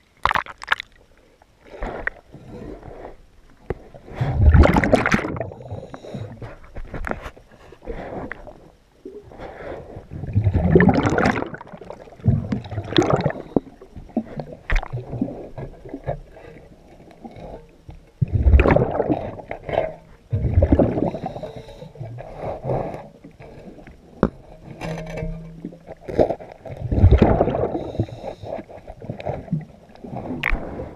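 Underwater sound of a scuba diver's exhaled bubbles gurgling out of the regulator, in swells of a second or two every few seconds. In the first second there is sharp splashing as the microphone breaks the surface.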